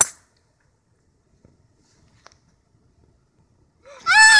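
A driver's clubhead striking a golf ball off the tee: one sharp click, then near silence with a couple of faint ticks. A child's excited shout starts at the very end.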